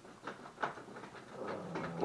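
Kitchen knife cutting through smoked sirloin onto a wooden cutting board: several short, soft taps and scrapes as the blade goes through the meat and meets the board.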